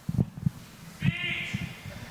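A brief, wavering, high-pitched vocal cry about a second in, over a few low thumps.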